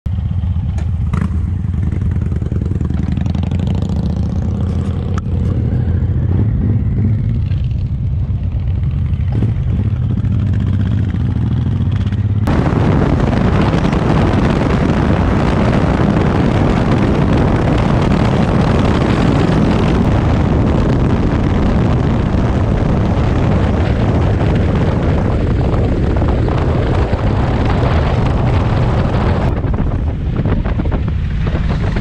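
Cruiser motorcycle engine running at low speed with a deep, steady low rumble. About twelve seconds in it switches abruptly to riding at road speed, where engine noise and wind rushing over the microphone fill the sound.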